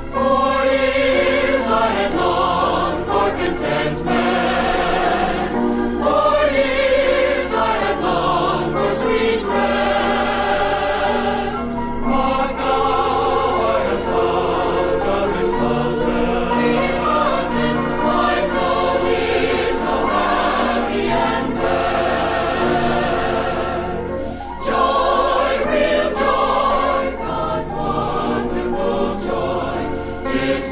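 A 40-voice choir singing a gospel song in phrases, with brief breaths between them, played from a vintage vinyl LP recording.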